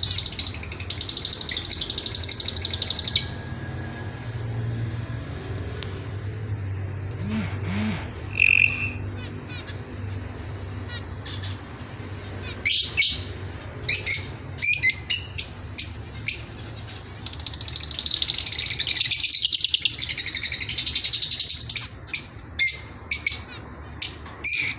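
White zebra finches calling and singing: a long buzzy song phrase at the start, a run of short sharp calls from about halfway, and another long buzzy phrase near the end. A faint low hum underlies the quieter stretch in between.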